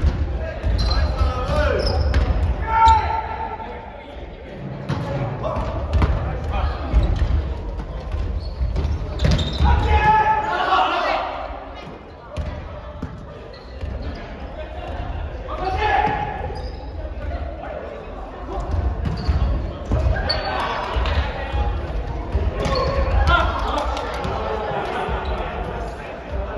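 Volleyball being struck and bouncing on a wooden gym floor, short sharp thuds repeating throughout, with players' shouts echoing in a large hall.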